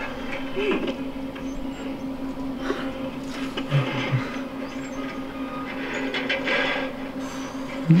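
A steady, even low hum from running equipment, with scattered rustling and handling noises and a few faint murmured voices.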